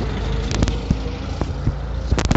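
Steady low rumble of a car being driven, with a few light clicks and knocks about half a second in and again near the middle.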